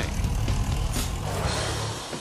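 Low, steady truck-engine rumble used as a documentary sound effect, with a brief rush of noise about a second in.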